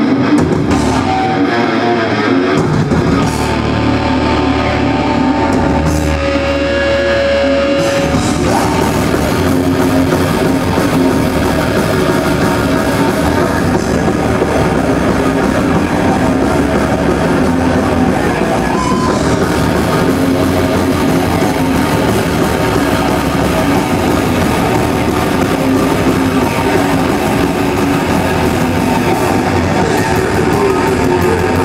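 A heavy metal band playing live: distorted electric guitars, bass guitar and drum kit, loud and unbroken.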